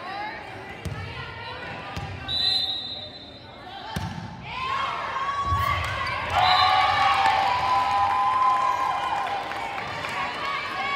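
Indoor volleyball rally: a few sharp hits of the ball about one, two and four seconds in, with a short high squeak between them. Then high voices shouting and cheering, loudest in the second half, with the echo of a large gym.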